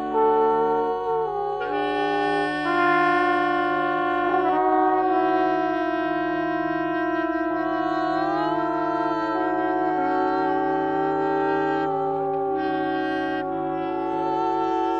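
Free-improvised music on flugelhorn, trombone and bass clarinet: several long held notes overlap, each entering and dropping out on its own, with one note sliding slowly upward a little past the middle.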